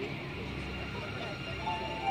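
Soundtrack of a castle projection show: quiet music with a voice, and a held note coming in near the end.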